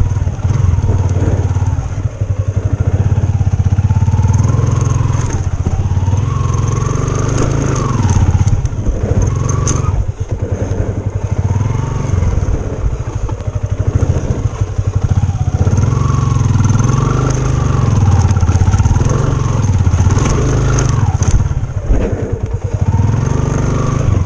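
Motorcycle engine labouring in low gear up a steep, rocky dirt climb, its note rising and falling again and again as the throttle is worked. Stones crunch and rattle under the tyres.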